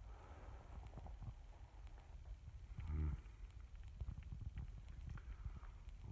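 Faint, irregular footsteps and small knocks of someone walking slowly through a room, with a short 'mm' hum about halfway through.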